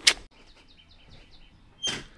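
A small bird chirping faintly in a quick run of short, high notes, about six a second.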